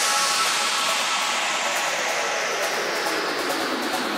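White-noise sweep effect in a trance track: a hiss whose filter slowly opens downward, so the noise reaches lower and lower in pitch while the level eases off gradually.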